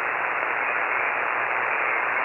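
HF amateur radio transceiver's receive audio: a steady hiss of band noise on an open frequency, heard through the narrow single-sideband filter while the operator listens for a reply after unkeying.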